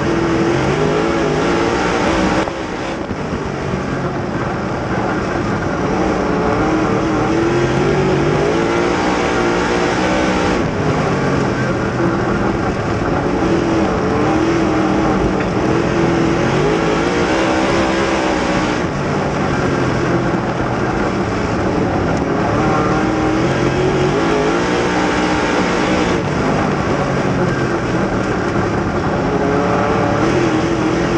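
A dirt Super Late Model race car's V8 engine at racing speed, heard from inside the cockpit. The engine note climbs and falls in a repeating cycle about every eight seconds as the car runs the straights and lifts for the turns.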